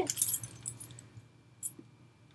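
Dog collar tags jingling briefly in the first half second as the wheaten terrier moves her head away from the toothbrush, followed by a faint click.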